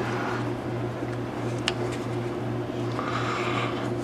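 Quiet handling of paracord on a PVC pipe: the cord rubs softly as it is worked through the knot, with a light tick about a second and a half in, over a steady low hum.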